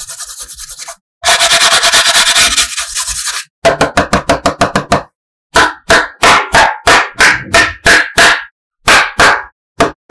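Hands rubbing and scratching across the inside of a hard plastic tray. After a long continuous rub, the sound breaks into runs of short strokes, about three a second, with brief silent gaps between them.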